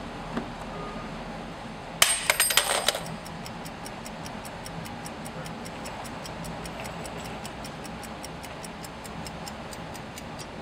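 A small brass clock drops onto the asphalt and clatters for about a second, then ticks steadily at about four ticks a second over faint street ambience.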